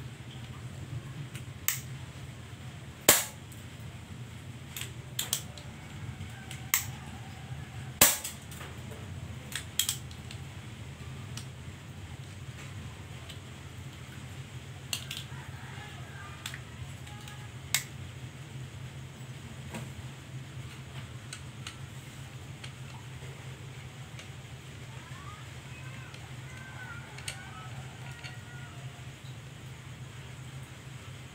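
Air rifle being handled: a series of sharp metallic clicks from its action, with two much louder sharp cracks about three seconds in and again about eight seconds in, then a few fainter clicks further on.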